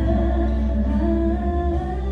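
Female vocal trio sustaining long, humming-like harmony notes over an instrumental accompaniment with a steady deep bass.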